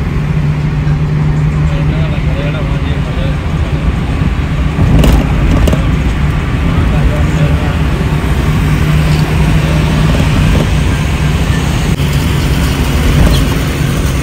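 Car interior while driving: a steady low drone of engine and road noise with a constant engine hum, and a brief knock about five seconds in.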